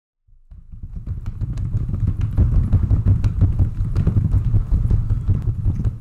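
Stampede sound effect: many hooves galloping, a steady low rumble with scattered sharp clatters that fades in over the first second or so.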